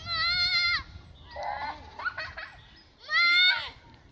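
Young girls squealing in play: a long, high-pitched squeal at the start and another about three seconds in, with shorter vocal sounds between.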